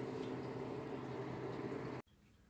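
Steady low hum with a faint even hiss: room tone at a workbench.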